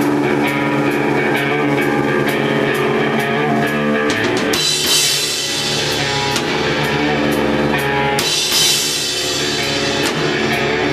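Live rock band playing in a room: electric guitar chords over a drum kit keeping time on the cymbals. About four and a half seconds in, the drums open up with crashing cymbals and the playing gets fuller.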